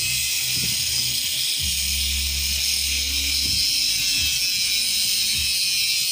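Small handheld rotary grinder running steadily at a high pitch as it grinds into the metal of a broken upper ball joint on a control arm, cutting it open.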